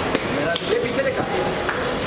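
Indistinct voices of people talking, with a few scattered sharp clicks.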